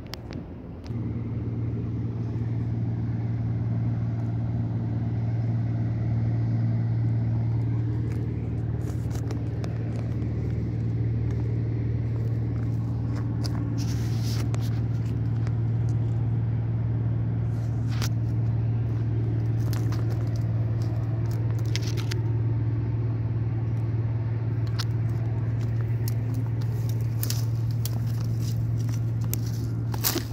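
A steady low mechanical hum, like an engine running, sets in about a second in and holds unchanged. From about eight seconds on, dry twigs and brush crackle and snap underfoot.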